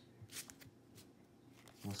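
Baseball trading cards slid one at a time off a hand-held stack: a few short, faint brushing sounds of card stock in the first second.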